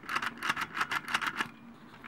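Turret of a Transformers Tidal Wave plastic toy being turned by hand, giving a quick run of small plastic clicks, about eight a second, that stops after about a second and a half.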